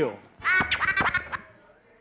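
A man's voice: the end of a word, then a short drawn-out nasal vocal sound about half a second in, lasting under a second, followed by a near-quiet pause.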